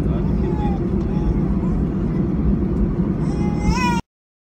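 Steady low cabin rumble of an Airbus A320 airliner taxiing on the ground after landing, heard from a window seat over the wing, with faint voices in the cabin and a brief high rising voice near the end.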